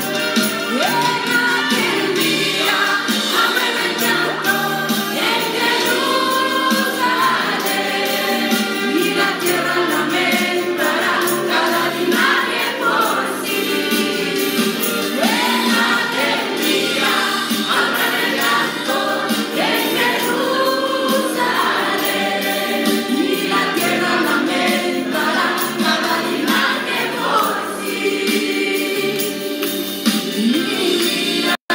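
Music: a choir singing, with voices moving continuously from note to note.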